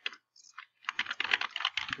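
Typing on a computer keyboard: a couple of single key taps, then a fast run of keystrokes from about a second in.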